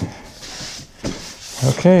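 A hand brushing across a sheet-metal door shield, a soft scraping rub, with a click at the start and a light knock about a second in.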